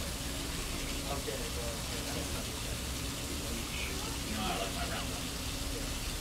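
Steady hum and hiss of shop background noise, with faint distant voices now and then.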